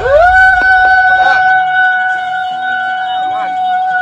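A comic sound effect edited in: a high pitched tone that slides up at the start, then holds one steady note.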